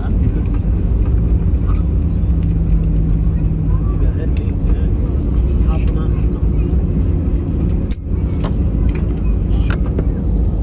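Loud, steady low rumble inside a jet airliner's cabin during the landing rollout, with the wing spoilers raised after touchdown. A steady hum runs under it for the first few seconds, with light rattles and clicks on top.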